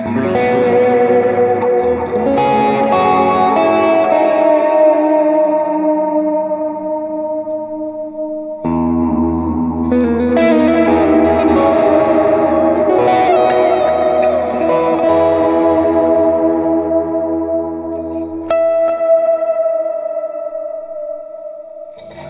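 Electric guitar, a Fena TL DLX90 Telecaster Deluxe-style with P90 pickups, played through effects: strummed chords that ring on, a new chord with deeper bass about nine seconds in, and another struck chord near the end that dies away.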